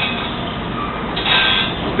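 Automatic saw grinder running on a circular sawmill blade, a steady machine noise, with the grinding wheel hissing against a tooth for a moment about a second in.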